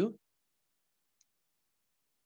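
A man's voice finishing a word, then dead silence on a video-call line, broken only by one faint tick about a second in.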